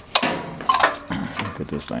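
Several sharp plastic clicks and knocks as an electric milk house heater's plug and cord are handled and pushed into an outlet.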